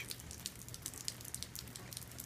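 Rain dripping: many light, irregular ticks of falling drops over a faint low hum.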